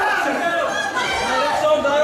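Several voices talking and calling out at once: spectator chatter around a ring.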